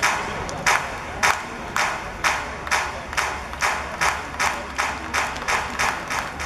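Spectators clapping in a steady rhythm, about two claps a second, gradually quickening.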